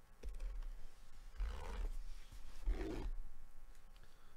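Utility knife slitting the packing tape along a cardboard box's seam, with the box handled and bumped; there are two longer scraping rasps, about one and a half seconds in and again near three seconds.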